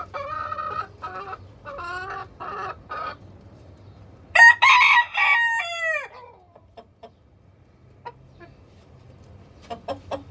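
Chickens clucking, with one loud drawn-out crow about halfway through that falls in pitch at its end. Quick, repeated clucking comes in near the end.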